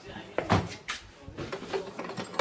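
Knocks and clunks of tank-shell ammunition crates being handled: a loud knock about half a second in, another near one second, and a few lighter clicks as a crate is worked open.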